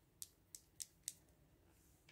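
Near silence with four faint, sharp clicks in the first second, like small objects being handled.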